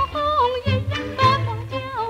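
1940s Shanghai popular song (shidaiqu): a woman's high voice sings a wavering, ornamented melody over a small band's accompaniment.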